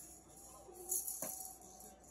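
A high jingling shimmer like a tambourine or shaker, swelling to its loudest about a second in and fading out, with one short knock partway through.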